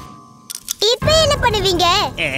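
A cartoon character's voice with a strongly wavering pitch, starting about a second in after a few short clicks, wordless rather than speech.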